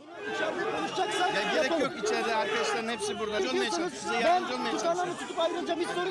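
A tightly packed crowd of reporters and onlookers, many voices talking over one another at once with no single voice standing out.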